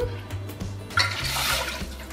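Liquid poured from a plastic jug into a glass measuring cup, a short splashing pour about a second in that lasts under a second.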